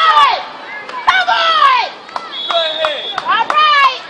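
Spectators shouting and yelling encouragement in loud, high-pitched bursts with sliding pitch, the loudest about a second in and again near the end.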